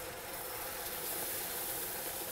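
Hot butter and brown-sugar syrup, with cream just stirred in, hissing and sizzling in a saucepan while a wooden spoon stirs it.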